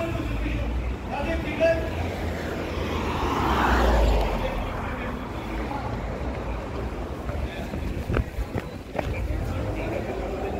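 Street traffic: a car passes, swelling and fading about three to four seconds in, over a low rumble, with voices in the background. A couple of sharp clicks come near the end.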